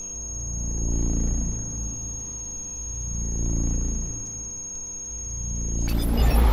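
Electronic intro sound design: a deep synthesized drone that swells and fades twice under a steady high-pitched electronic whine. The whine cuts off just before the end as a louder noisy hit begins.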